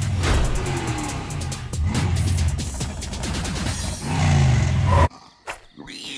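Loud logo music with heavy bass notes and sharp hits that stops abruptly about five seconds in, leaving a few faint clicks.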